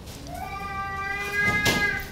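Bible pages rustling as they are turned, with the loudest rustle about three quarters of the way in. Over it runs a steady, high-pitched drawn-out cry or whine of about a second and a half from an unseen source.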